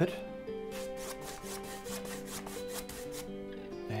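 A wide flat paintbrush scrubbed rapidly back and forth on a canvas, about six scratchy strokes a second, over soft background music with sustained notes.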